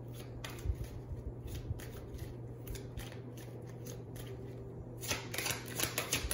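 Deck of tarot cards being shuffled by hand: scattered soft card clicks, then a quick run of snapping card sounds near the end.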